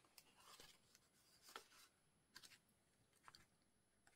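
Near silence, with a few faint, brief rustles and taps of paper being handled and pressed on a craft mat.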